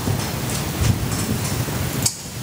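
Steady rushing noise with a few faint clicks, cutting off suddenly at the end.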